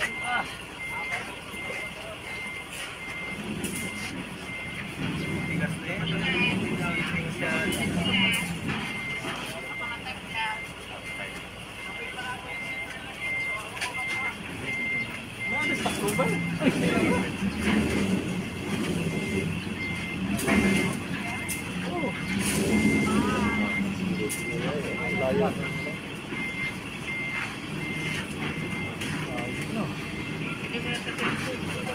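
A tractor-trailer's reverse alarm beeping in a steady on-off rhythm as the rig backs up, with its diesel engine running underneath and swelling several times.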